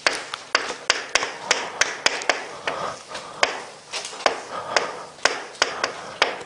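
Chalk on a blackboard as boxes and a character are drawn: sharp taps, irregular at about three a second, as each stroke lands, with scratching between them.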